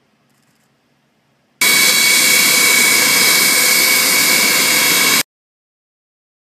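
Antonov An-124 turbofan jet engines, loud and close: a steady rush of jet noise with a high whine, starting suddenly about a second and a half in and cutting off suddenly about three and a half seconds later. Before it there is only a faint low hum.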